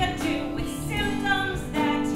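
A live stage-musical song: singing with held, wavering notes over instrumental accompaniment.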